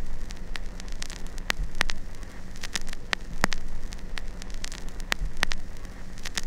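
Crackling static: irregular sharp clicks, about two or three a second, over a faint hiss and a steady low hum.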